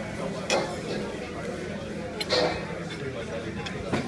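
Indistinct background voices and room murmur of a restaurant dining room over a steady low hum, with two sharp clicks, about half a second and two and a quarter seconds in.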